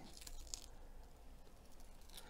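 Masking tape being slowly peeled off the edge of a canvas, faint.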